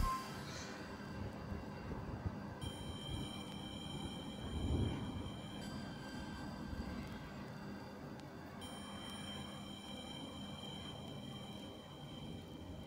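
Quiet background music of sustained, held synth-like tones, with a higher layer of tones that fades in and out twice. There is a soft low bump near the middle.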